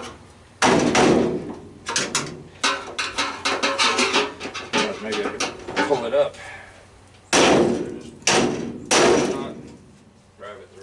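Hammer blows on a chisel cutting through a furnace's sheet-steel cabinet, each strike ringing in the metal. There is a heavy blow about half a second in, a run of lighter strikes in the middle, and three heavy blows near the end.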